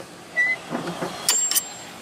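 A hammer strikes a steel rat-tail file set on the tang of a stainless steel helicoil insert: a single sharp metallic tap a little past halfway, followed by a short high ring. The tap knocks the insert's installation tang out.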